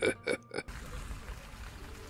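A man laughing to himself in short pulses, about five a second, that stop about half a second in, followed by faint steady hiss.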